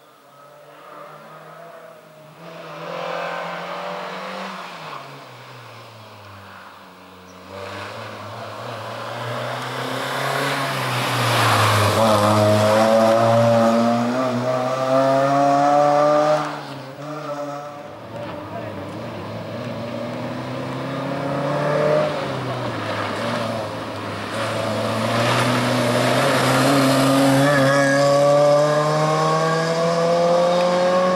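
Suzuki Swift hatchback's four-cylinder engine revving hard through a tight cone slalom, its pitch climbing with each burst of throttle and dropping on the lifts and gear changes. Faint at first, it grows loud as the car comes close, breaks off suddenly about two thirds through, and climbs again near the end.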